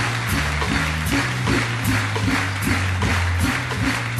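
Jazz organ trio playing an instrumental vamp: a drum kit keeps a steady cymbal beat over a stepping organ bass line.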